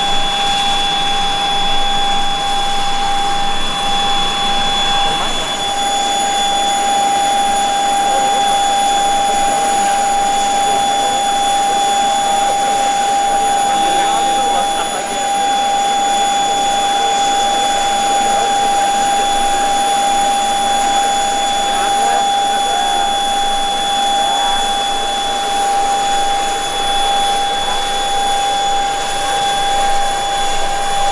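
A jet aircraft engine running, a loud, steady whine with fixed high tones over a rushing noise.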